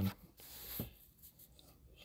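A short breath in between spoken phrases, a soft rush lasting about half a second, then near silence.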